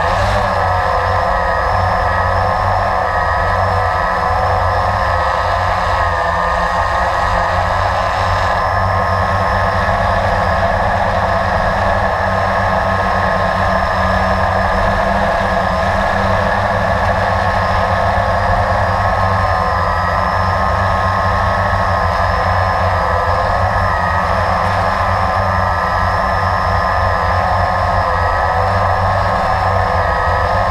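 Blade 350 QX2 quadcopter's four brushless motors and propellers in flight: a steady, loud whine and buzz of several close tones whose pitch wavers slightly with the throttle. It is picked up up close by the camera mounted on the drone.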